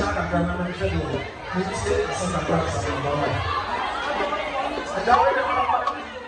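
Chatter of many guests talking at once in a large, crowded hall, with one voice rising louder about five seconds in.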